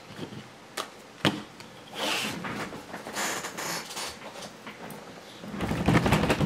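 Rigid plastic card holders clacking and sliding against each other and across a tabletop as a stack of cased trading cards is handled: two sharp clicks, then a few seconds of scraping and rustling.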